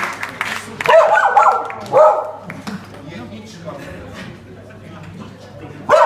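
A dog barking: two or three short barks in the first two seconds, then another bark at the very end, over the murmur of voices in a large room.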